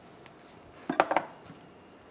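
Socket wrench with a 14 mm socket on an engine oil drain plug, a quick cluster of sharp metallic clicks about a second in as the plug is loosened.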